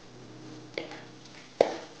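Metal ladle knocking against a large wok of rice: a faint knock about three-quarters of a second in and a sharper one about a second and a half in, over a low steady hum.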